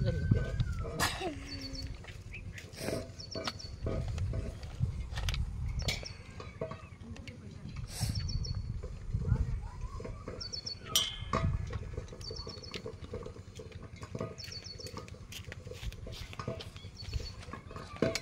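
Crabs being cleaned by hand: shells and legs cracked and snapped off, giving scattered sharp clicks and snaps at an uneven pace.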